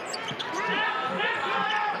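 A basketball bouncing on a hardwood court, with sneakers squeaking over the arena crowd's steady background noise.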